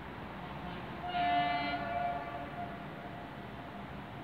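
Train horn sounding once, about a second in, loud for under a second, then a fainter tone trailing off over the next two seconds, over steady background noise.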